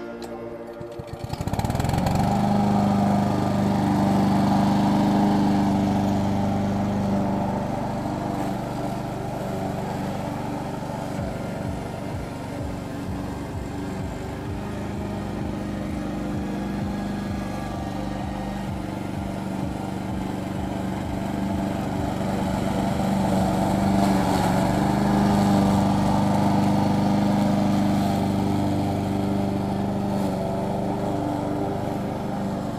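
Walk-behind gas push lawn mower engine running steadily while cutting grass, coming in about a second and a half in. It grows quieter as the mower moves away and louder again near the end as it comes back.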